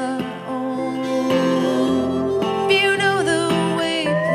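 Country-folk band playing an instrumental passage: acoustic guitar strumming under a steel guitar whose notes slide up and down in pitch.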